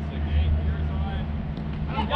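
A steady low engine drone, like a vehicle or motor running close by, holding an even pitch throughout, with faint voices over it.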